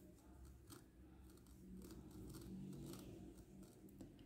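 Near silence, with faint light ticks and rustles of a crochet hook working thread through the stitches.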